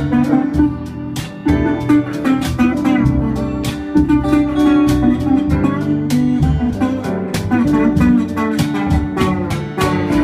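Live instrumental passage on guitars: an acoustic guitar strummed in a steady rhythm, with a second guitar playing held, sustained notes over it. No singing.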